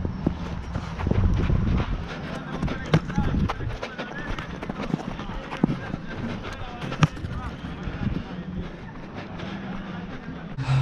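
Football play on artificial turf: running footsteps and the thuds of a ball being kicked, the sharpest kick about seven seconds in, with players' voices calling faintly across the pitch.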